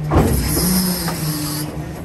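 The belt trailer's large rear-door lock pin being pulled back by its hydraulic control: a sudden clunk right at the start, then a hiss lasting about a second and a half. Underneath, the road tractor's diesel engine idles steadily, driving the PTO.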